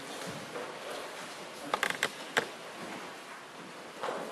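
A few short, sharp creaks and knocks close together about two seconds in, from two people's feet and bodies shifting on the floor during a grappling demonstration, over faint room noise.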